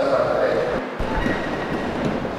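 Congregation and ministers rising to their feet: a loud, even rush of rustling and shuffling from many people getting up out of wooden pews and chairs.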